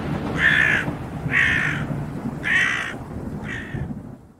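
A crow cawing four times, about a second apart, the last caw fainter, over a low steady rushing noise.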